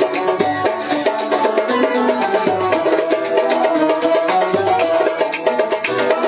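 Instrumental passage on an oud and two banjos: plucked melody lines over rapid strumming, with no singing.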